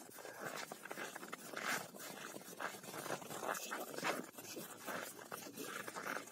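Faint, irregular crunching and scraping of steps on packed snow, from dogs trotting about.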